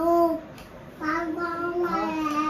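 A child's high voice singing out: a short note at the start, then a long, nearly level held note from about a second in.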